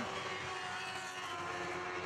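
Lightning sprint cars' 1,000cc motorcycle engines running at high revs around a dirt oval. It is a steady drone of several held engine tones, with no sharp changes.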